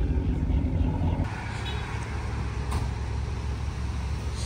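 Dodge Challenger V8 idling with a steady low rumble for just over a second, then an abrupt cut to quieter open-air car and traffic noise with a single sharp click in the middle.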